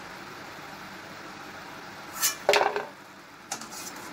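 Slotted steel spatula knocking and scraping against a steel kadai as crisp deep-fried pastry cups are lifted out of the oil, over a steady hiss of frying oil. A few sharp, loud knocks come a little past halfway, with a smaller click near the end, as a cup is handled and dropped into a plastic bowl. The crisp knocks are the sign of well-fried, crunchy cups.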